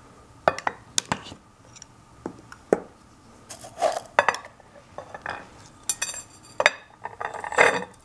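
Metal tea tin being opened, then a mesh tea-infuser spoon scraping and clinking against the tin and a ceramic dish: an irregular string of sharp clicks and knocks. There is a brief metallic ring about six seconds in, and a flurry of scraping and clinking near the end.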